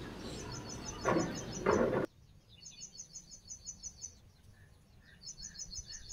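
A small bird chirping in rapid high trills of about seven notes a second, each run lasting about a second and a half and repeating three times. Two short rustling noises come in the first two seconds, and the background hiss drops away abruptly about two seconds in.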